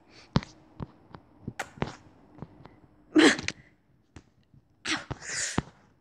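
Mouth noises from a voice performer: a few sharp lip clicks and smacks, then a short, sharp breathy burst about three seconds in and another breathy burst near the end.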